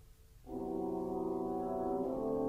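Orchestral music: a brief hush, then a sustained chord comes in about half a second in and is held steady.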